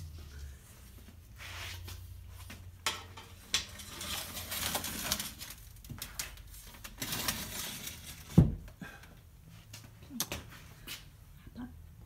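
A large glass sheet being slid back into a wooden rack among other glass sheets: scraping and light clinks and knocks, with one loud knock a little past the middle.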